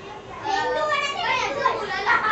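Indistinct children's voices, talking and playing, starting about half a second in.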